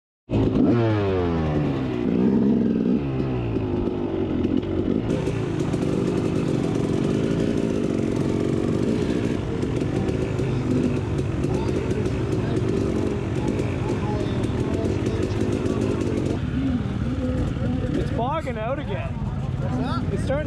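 KTM enduro dirt bike engine running at low speed, revved up and down a few times at the start, with other dirt bike engines running around it. A voice comes in near the end.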